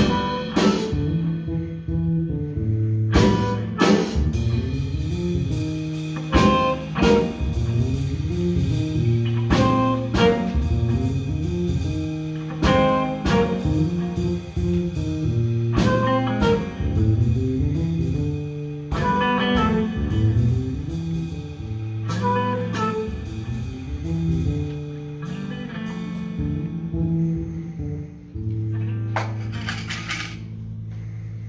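School jazz band playing: electric guitar and bass guitar over a drum kit, with regular drum and cymbal hits. The music stops right at the end.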